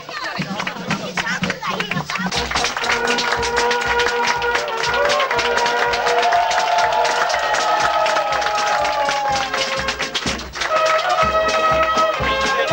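A fanfare (brass band) playing a march: held brass notes over a steady drumbeat, with a brief break about ten and a half seconds in before the band plays on.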